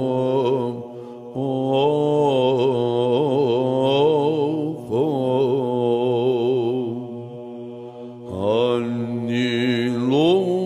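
Byzantine chant in the plagal fourth mode: a man's voice sings a long, ornamented melismatic line over a steady low held drone (the ison). The line breaks off briefly about a second in, near five seconds and just past eight seconds, then picks up again.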